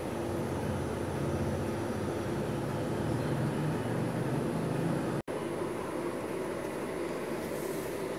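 Steady background hum and hiss, with a momentary dropout about five seconds in where the footage is cut.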